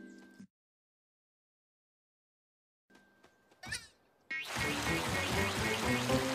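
Cartoon sound effects: after a gap of dead silence, a short rising swish, then about four seconds in a loud downpour of rain begins, pouring from a small rain cloud, with music playing under it.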